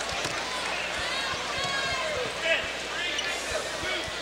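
Basketball arena crowd murmuring, with a few irregular thuds of a ball bouncing on the hardwood floor and short high squeaks of sneakers on the court.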